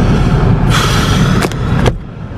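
Car cabin road and engine noise while driving, a steady low rumble. About three quarters of a second in there is a brief rush of hiss, and two sharp clicks come near the end.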